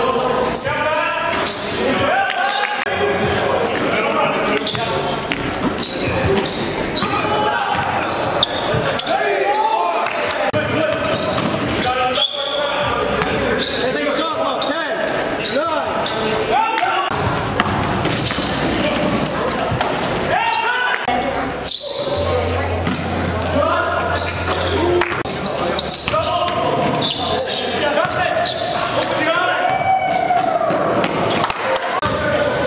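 Live game sound in an echoing gymnasium: players' voices calling out indistinctly and a basketball bouncing on the hardwood floor.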